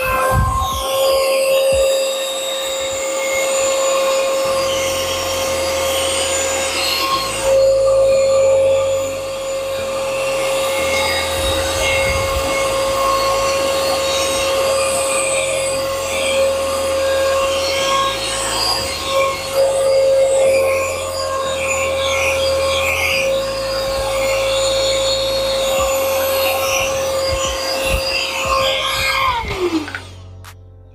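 Small cordless handheld vacuum running at a steady high motor whine as it sucks up cookie crumbs. It switches off just before the end and its pitch falls as the motor winds down. Background music plays under it.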